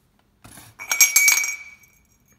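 Aluminium tubes knocked against each other and the steel machine table. A short scrape comes about half a second in, then a quick run of metallic clinks with a high ringing tone that fades out near the end.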